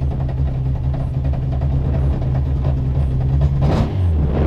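Renault Clio S1600 rally car's engine running steadily at low revs, heard from inside the cockpit while it waits at the start during the countdown.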